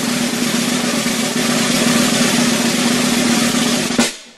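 A sustained snare drum roll: a loud, even rattle with a steady drumhead tone underneath, held unbroken and then cut off at the end, dying away quickly.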